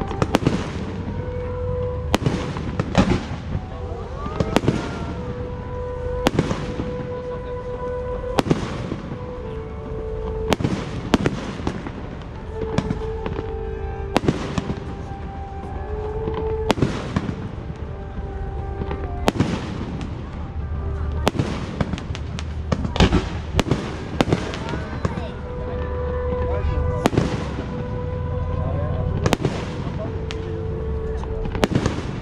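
A festival display of aerial fireworks, shells bursting one after another at about one bang a second. Music plays underneath with long held notes.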